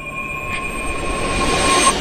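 Soundtrack riser: a held high tone under a hiss that swells steadily, peaks just before the end and then cuts off.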